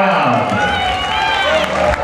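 Several spectators shouting and calling out at once, loud and overlapping.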